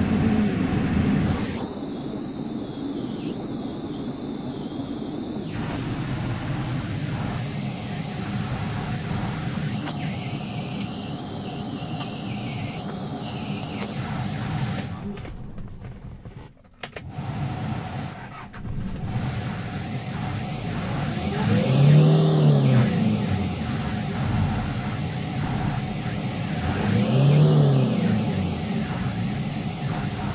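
Hyundai Porter II's diesel engine heard from inside the cab. It runs, drops out briefly just past the middle as it is switched off and restarted, then idles and is revved twice near the end, each rev rising and falling in pitch.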